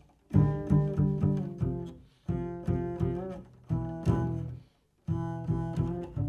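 Jazz double bass played pizzicato, plucked notes in short phrases with brief pauses between them.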